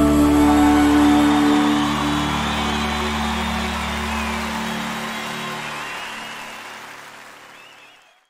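The final held chord of a live band rings out and dies away, giving way to audience applause and cheering, and everything fades out near the end.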